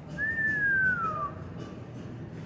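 A single whistled note, about a second long, sliding down in pitch, over faint background music.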